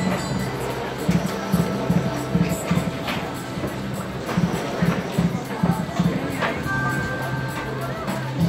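Slot machine's free-spins bonus music: a rhythmic electronic tune with a low note pulsing several times a second. A few short, sharp sound effects cut in over it.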